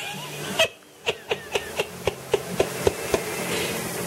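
A woman's stifled giggle: after a brief held breath, a quick run of short breathy laugh bursts, about four a second.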